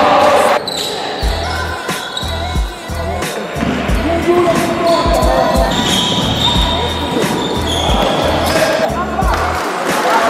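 Indoor basketball game sound: a ball bouncing on the court floor, sneakers squeaking and players calling out, with a music beat underneath.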